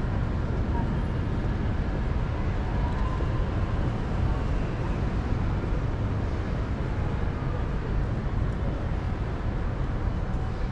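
City street ambience: a steady rumble of road traffic, with faint voices of passers-by.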